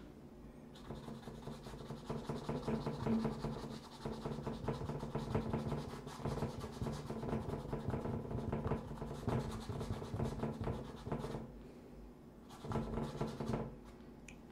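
A paintbrush rubbing acrylic paint into stretched canvas in quick back-and-forth blending strokes. The strokes start about a second in, pause briefly a couple of seconds before the end, then resume.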